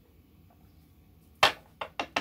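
Two sharp knocks, the first loud and the second weaker, made by a small card-deck box being handled or knocked against a wooden table. They come after a second and a half of quiet, and a quick run of knocks starts right at the end.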